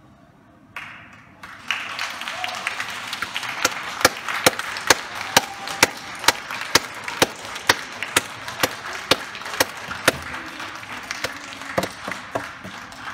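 Scattered applause from several people, with one close clapper clapping steadily and loudly about twice a second, starting about two seconds in. A short call or cheer comes just before the clapping begins.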